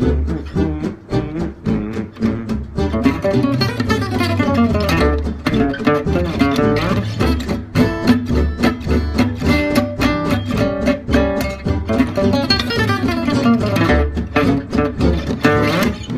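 Gypsy jazz guitar, an oval-hole Selmer-Maccaferri-style acoustic, played with a pick: a fast A9 arpeggio lick resolving to D major, repeated in quick note runs up and down the neck.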